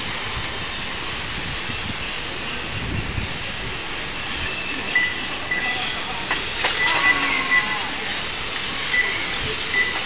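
1/12-scale electric RC cars racing, their motors giving a high whine that rises and falls as they accelerate and pass. A few short high-pitched beeps and a couple of sharp clicks sound in the second half.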